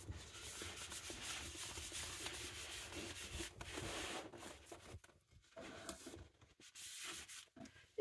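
A damp baby wipe scrubbing back and forth over the printed vinyl floor of a toy playset, working at a stain. The rubbing is faint, steady for about five seconds, then comes in shorter strokes with brief pauses.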